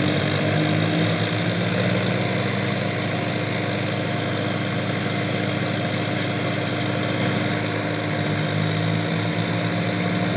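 Diesel tractor engines of a Sonalika DI 50 and a John Deere 5050 running steadily. The low engine note swells for the first few seconds and again near the end.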